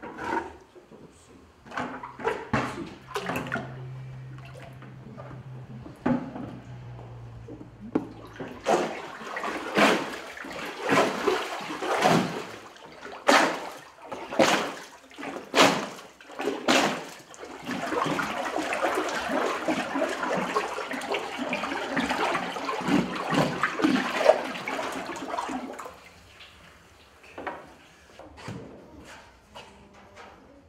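Pulp slurry in a stainless-steel papermaking vat stirred hard with a wooden stick to mix the paper fibres through the water: loud splashes about once a second, then continuous churning and sloshing that stops about 26 seconds in. It opens with a few knocks as a plastic water bucket is handled.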